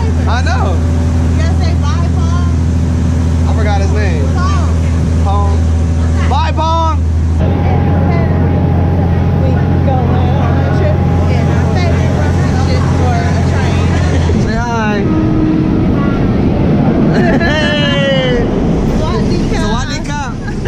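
Diesel train engine running with a steady low drone while people talk over it. About 14 seconds in the drone stops and gives way to the rushing rumble of the train under way, heard through open carriage windows.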